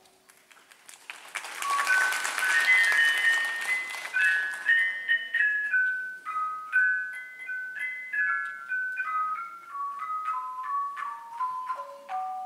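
Thai khong wong gong circle played solo with padded mallets: after a brief near-silent pause, a fast run of ringing tuned gong notes starts about a second in, busy and dense at first, then a quick melody that steps gradually lower in pitch.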